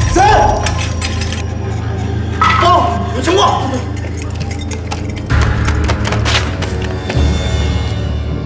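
Tense film score with a steady low drone and sharp percussive hits, over a man shouting "谁" ("Who's there?") at the start and more shouts around three seconds in.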